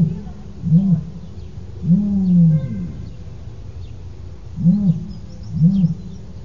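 Male ostrich booming: two short, low booms followed by a longer drawn-out boom that sinks slightly in pitch, then after a pause two more short booms near the end.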